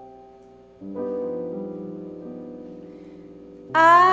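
Grand piano played softly and slowly: a few quiet notes fade, then a fuller chord is struck about a second in and left to ring. A woman's singing voice comes in loudly just before the end.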